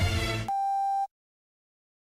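Dance-pop track with a heavy beat stops abruptly, and a single steady electronic beep sounds for about half a second before cutting off sharply, like a censor bleep.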